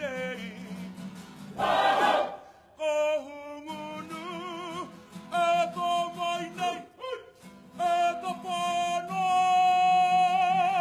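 Kapa haka group singing a waiata, men's and women's voices together, in phrases with short breaks between them. A brief loud burst breaks in about two seconds in. Near the end the group holds one long note with vibrato.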